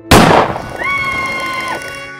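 A single loud revolver gunshot just after the start, dying away over about half a second, followed by a steady high tone lasting about a second.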